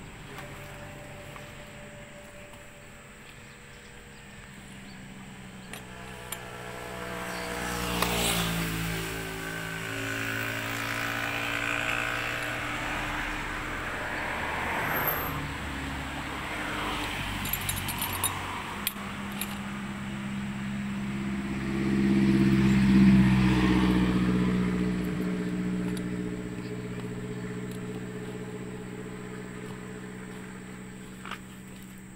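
Motor vehicles driving past on a road: one goes by about eight seconds in with falling engine pitch, and a louder one swells and fades around 22 to 25 seconds in.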